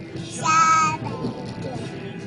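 A toddler's high-pitched sung note, held about half a second, a little way in, over music playing in the car.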